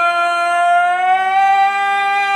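A singer in a recorded song holding one long, steady note, its pitch rising slightly about a second in.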